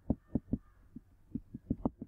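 A stylus knocking against a writing tablet as words are handwritten: a quick run of short dull knocks, three at the start, a pause of about a second, then four more near the end.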